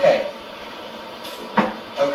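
A single sharp knock about one and a half seconds in, after a brief sound at the start.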